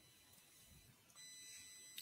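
Near silence: faint hiss of the call's microphone with faint steady high-pitched electronic tones.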